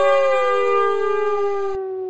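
A long wailing sound effect: a pitched tone with many overtones gliding slowly downward over a second, steadier tone beneath it. It thins out near the end and then stops abruptly.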